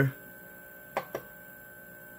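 Two quick clicks, about a second in, from the selector knob on a Magnum Energy inverter remote panel as it is pressed and turned to step through the menu screens.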